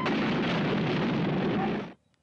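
Film sound effect of an explosion as a steam locomotive smashes into a grand piano on the track: a dense, steady rush of noise for almost two seconds that cuts off abruptly.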